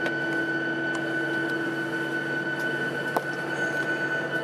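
Steady cabin hum inside a Ryanair Boeing 737-800, an even rush of air with a constant high whine and a lower drone underneath. One faint click about three seconds in.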